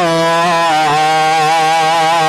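A man's voice holding one long, steady chanted note with a slight waver: a drawn-out vowel sung at the end of a sermon phrase.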